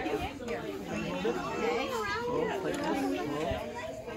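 Indistinct chatter of many children's voices talking at once, with no single voice standing out.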